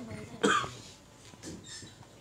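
A single short cough about half a second in, followed by low room noise.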